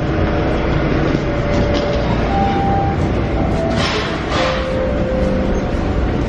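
Toronto subway train: a steady low rumble in and around the car, with a brief hiss about four seconds in.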